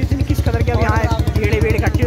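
A motorcycle engine running close by, a rapid, even thudding that goes on throughout, with people's voices over it.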